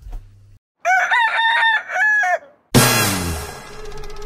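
A rooster crows once, cock-a-doodle-doo, about a second in, after a brief dead-silent gap. Near the end a loud sudden hit opens upbeat music with drums.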